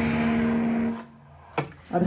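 A live punk band's amplified electric guitars and bass ringing out on a held final chord, which cuts off suddenly about a second in. After that it is much quieter, with one short knock.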